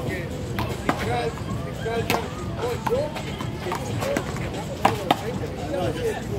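Sharp smacks of a rubber ball being struck and rebounding off the wall and court surface during a rally, about five in all, two close together near the end, with voices in the background.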